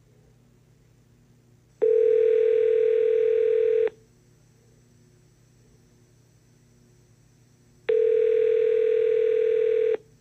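Telephone ringback tone on an outgoing call: two steady rings of about two seconds each, starting six seconds apart, in the North American two-seconds-on, four-seconds-off pattern. The called phone is ringing and has not yet been answered. A faint low line hum is heard between the rings.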